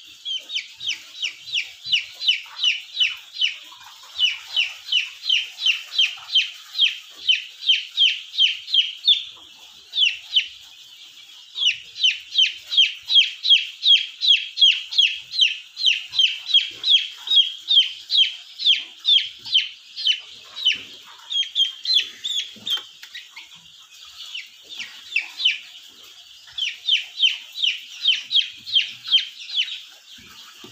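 12-day-old Australorp chick peeping loudly and insistently: high, short peeps that each fall slightly in pitch, about three a second, in long runs with two short breaks.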